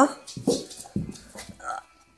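American Staffordshire Terrier giving a short, soft whine near the end, among a few light knocks.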